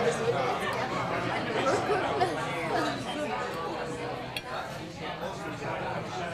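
Several people chattering over one another at a dining table, with an occasional clink of cutlery on plates and one sharp click a little past the middle.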